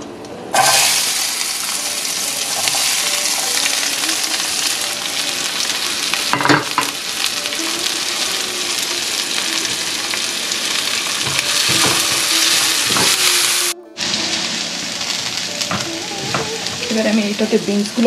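Chopped onions dropped into hot oil in a cast-iron skillet, sizzling loudly as soon as they land and frying steadily, with occasional knocks of a spatula on the pan. The sound cuts out briefly near the end, then the frying resumes as green beans are stirred in the pan.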